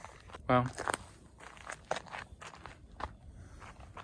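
Footsteps on a dirt and gravel trail, a short step about every third of a second, after a brief voice sound about half a second in.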